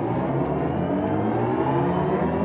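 BMW i4 M50 electric car under full acceleration from about 50 km/h. Its dual-motor electric drive sound rises steadily in pitch, heard from inside the cabin.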